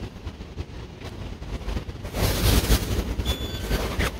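Street traffic: a passing vehicle whose rushing noise swells about two seconds in, with a faint short electronic beep near the end.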